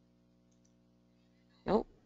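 Near silence with a very faint steady hum, broken near the end by a short spoken 'oh'.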